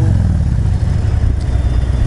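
Harley-Davidson touring motorcycle's V-twin engine heard from the rider's seat. Its note drops right at the start, then it runs steadily at lower revs.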